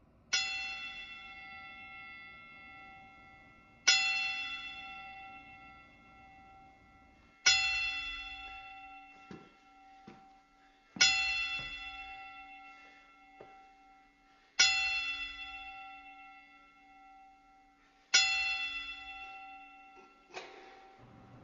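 A ring bell struck slowly six times, about three and a half seconds apart, each strike ringing out and fading before the next: a tolled bell salute for the dead fighter.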